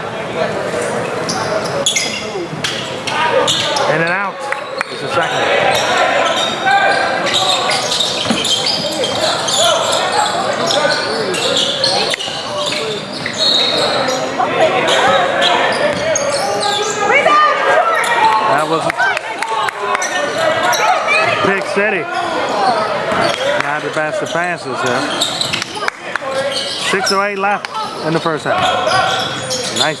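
A basketball bouncing on a hardwood gym floor during live play, with the voices of players, coaches and spectators echoing in a large hall.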